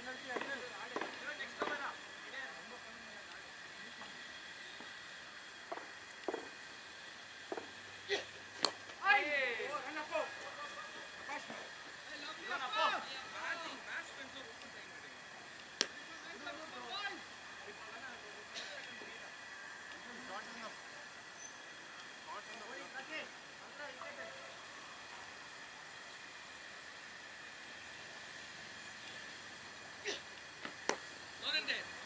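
Distant shouts and calls from cricket fielders on an open ground, loudest around nine to thirteen seconds in. A few sharp clicks and a faint steady high-pitched hum sit underneath.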